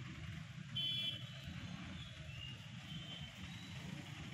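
Traffic noise: a steady low rumble of engines, with a short vehicle horn beep about a second in.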